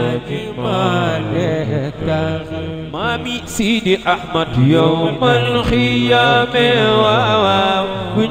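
Men's voices chanting an Islamic religious song. One voice sings long, wavering, ornamented lines over other voices holding low notes, with no drums.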